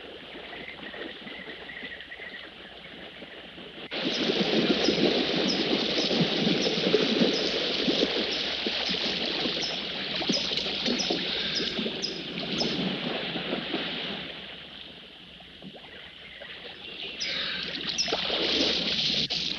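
A swimmer doing front crawl in a pool: splashing from arm strokes and kicks at a steady beat of about two strokes a second. The splashing comes in suddenly about four seconds in, eases off near fourteen seconds and picks up again at the end; before it, only quieter lapping water.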